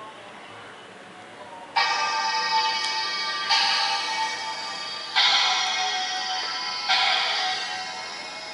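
Music playing from the W Pad Reloaded tablet's small built-in speaker, starting about two seconds in. It sounds thin, with no bass, and a new loud chord strikes about every 1.7 seconds.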